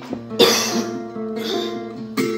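Acoustic guitar playing chords, with a single loud cough about half a second in that stands out over the guitar.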